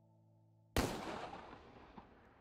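A single handgun shot about three-quarters of a second in, sharp and loud, with a long echoing tail that slowly dies away. It cuts off a soft sustained music chord.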